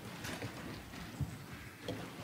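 Congregation sitting down in wooden pews: scattered knocks, thumps and shuffling, with a louder thump a little past one second in.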